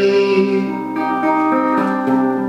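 Fingerpicked guitar chords ringing on in a break between sung lines of a slow rock song, with new notes coming in about a second in and again shortly after.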